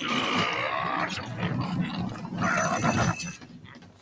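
A cartoon bear's growling grunts, continuous for about three and a half seconds and dying away shortly before the end.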